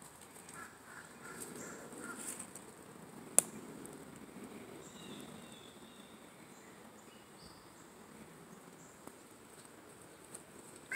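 Rustling of steps through dry leaf litter on a woodland floor, with one sharp snap a few seconds in and a few faint bird calls.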